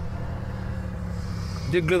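Car engine idling steadily, heard from inside the cabin as a low, even hum.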